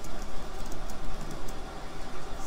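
A pause in speech holding steady background hiss and a scatter of faint light clicks.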